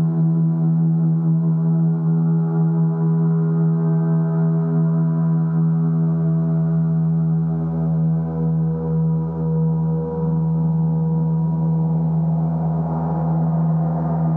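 Gongs played in a continuous wash: a steady deep hum under many overlapping ringing tones, with no distinct single strikes. The higher tones swell louder near the end.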